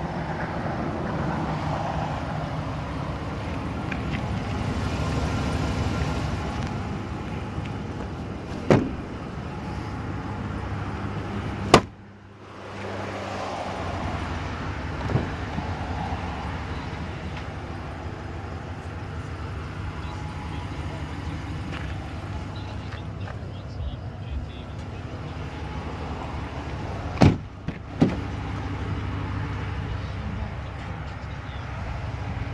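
A steady low vehicle hum, with several sharp clicks from the pickup truck's door latches and handles as its doors are opened. The loudest click comes about twelve seconds in; two more come close together near the end.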